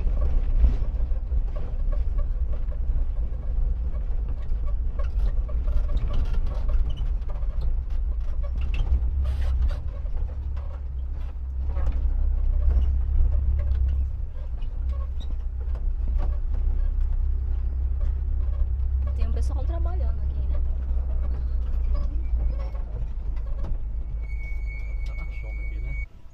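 A vehicle driving slowly over a dirt track, heard from inside: a steady low rumble with scattered knocks and rattles from the bumps.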